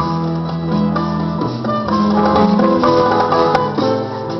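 Instrumental break in a Puerto Rican trova piece: a string band of guitars and other plucked string instruments plays a strummed, plucked accompaniment between sung verses.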